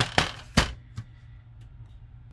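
Hard plastic knocks as a plastic laptop cooling pad is handled and turned over on a table: three sharp clunks in quick succession, the third the loudest, then a fainter one about a second in.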